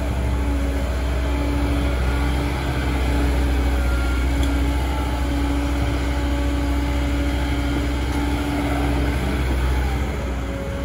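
Caterpillar tracked hydraulic excavator's diesel engine running steadily under load as it digs a bucket of dirt and swings it to a dump truck, a held tone over the low drone breaking off and coming back.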